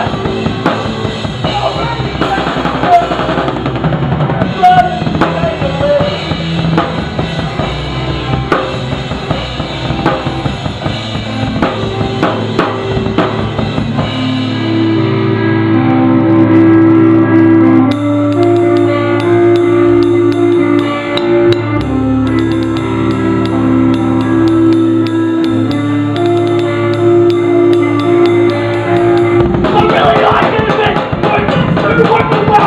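A live band plays loudly on drum kit and guitar. About halfway through, the busy drumming drops back and long held chords ring out, with the cymbals coming back in a few seconds later.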